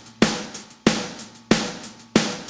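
Rock song intro of single drum-kit hits, a bass drum with a crash cymbal struck together, three times about two-thirds of a second apart, each ringing away before the next.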